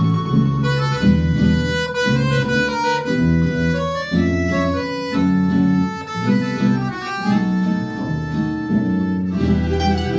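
Small folk ensemble playing an instrumental passage: accordion carrying a stepped melody over plucked guitars and a steady bass line.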